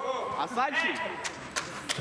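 Men's voices calling and talking across a large indoor sports hall, with a few short, sharp knocks.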